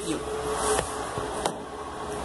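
Handling noise from a fabric wrist cuff being adjusted on the forearm: a soft rustle, then a sharp click about one and a half seconds in.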